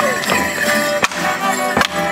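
Live folk band of fiddles and a drum playing a Morris dance tune, with two sharp clacks of the dancers' wooden sticks striking together, one about a second in and one near the end.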